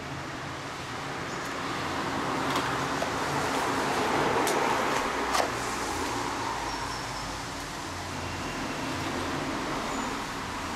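Street traffic noise: a vehicle passing, its sound swelling to a peak near the middle and then fading, with two sharp clicks near the loudest point.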